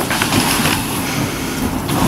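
A steady rustling, shuffling noise with a few faint clicks and no speech, the sound of a crowded meeting room.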